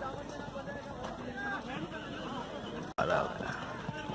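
Hoofbeats of a ridden horse galloping on a sand track, with a crowd's voices and shouts throughout. The sound drops out briefly about three seconds in and comes back louder.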